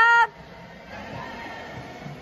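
A high-pitched shouted cheer of encouragement ending about a quarter second in, then the steady background murmur of a gymnasium crowd.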